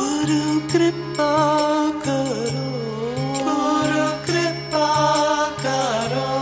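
Devotional bhajan music: a singer's long, gliding sung notes over evenly repeating low accompanying notes.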